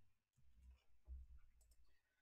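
Near silence with faint computer mouse clicks and a few low, soft thumps.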